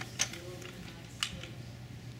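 Two short, light clicks about a second apart over a faint steady hum.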